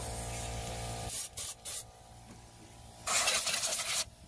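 Compressed air from an air blow gun cleaning debris off an engine. A steady rush cuts off about a second in, followed by three short blasts and then one longer, louder blast near the end.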